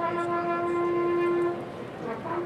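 A brass instrument sounding a bugle call: one long held note for about a second and a half, then a brief break before the next notes.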